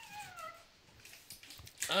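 A short, high-pitched cry that falls steadily in pitch, followed by faint rustling of wrapping paper being torn off a present.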